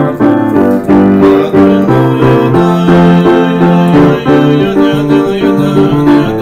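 Solo piano playing a lively Purim tune, chords and melody notes struck in a quick, even rhythm, with no singing.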